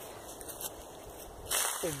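A brief rustle near the end as a juçara palm seedling's soil root ball is lowered into the planting hole; before that, only a low outdoor background hiss.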